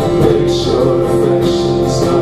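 Live worship band playing: strummed acoustic guitar over electric bass and electric guitar, with steady held notes.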